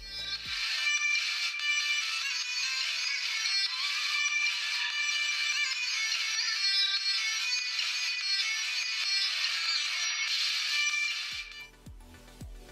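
Music played through the Cubot Power smartphone's loudspeaker: tinny and flat, with no bass. That thin sound is the mark of a poor-quality phone speaker. The music starts about half a second in and stops shortly before the end.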